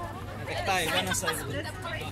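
People chatting, with a steady low hum underneath.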